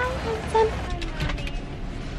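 A few short pitched sounds, then steady noise inside a minivan's cabin.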